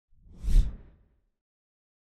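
A single whoosh sound effect for a logo intro, swelling about half a second in and fading within a second.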